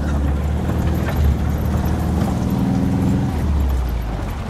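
Old 4x4 utility vehicle's engine running under way on a dirt track, heard from inside the cab as a steady low rumble. Its note firms up for a second or so past the middle.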